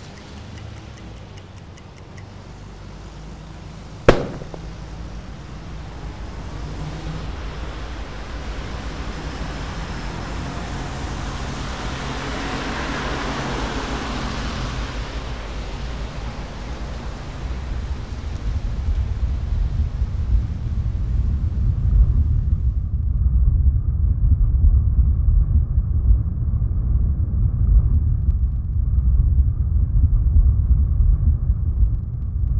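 A sharp click about four seconds in, then a wash of noise that swells and fades. A deep rumble grows louder underneath it and takes over near the end, once the higher sounds drop away.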